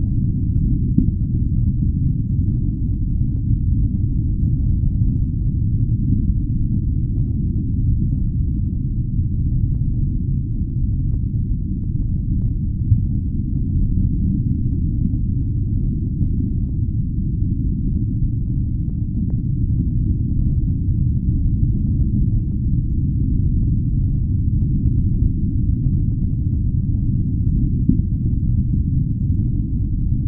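A steady, dense low rumble with no tune or voice, its sound all in the bass and even in loudness throughout.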